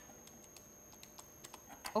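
Computer keyboard keystrokes: a few faint, scattered key clicks while a line of code is edited.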